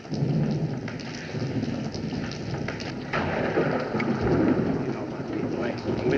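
Thunderstorm sound effect: steady rain with thunder rumbling, swelling louder about three seconds in.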